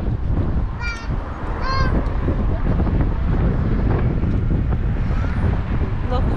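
Strong wind buffeting the microphone, with two short gull calls about a second in and again just under a second later.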